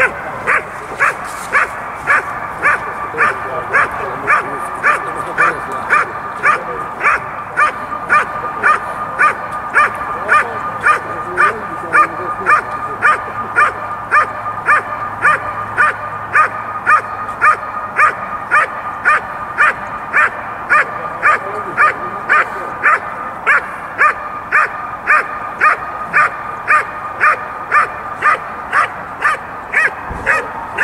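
A dog barking steadily and without pause, about two sharp barks a second, on a protection-phase working-dog trial field.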